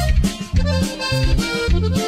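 Instrumental passage of a norteño-style corrido: an accordion melody over a bass line that pulses about twice a second.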